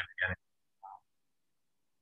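Speech ends a third of a second in, followed by dead silence. Near the first second the silence is broken once by a brief, faint sound.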